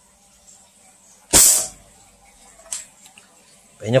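A plastic toy Desert Eagle pistol fires a single BB into the bottom of an aluminium drink can from about 5 cm, one short sharp shot about a second in, and the hit dents the can slightly. A much fainter click follows about a second later.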